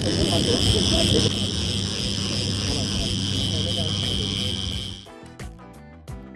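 Outboard motor running steadily at trolling speed, a constant low drone with a high steady whine over it. About five seconds in it cuts off suddenly and music takes over.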